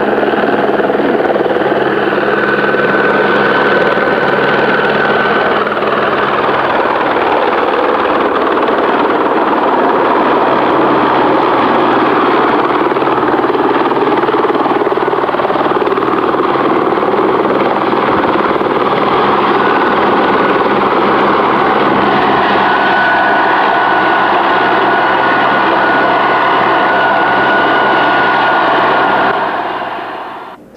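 Helicopter passing low overhead and then running on the ground with its main rotor turning: a loud, steady rotor and turbine-engine noise with a faint high whine in places.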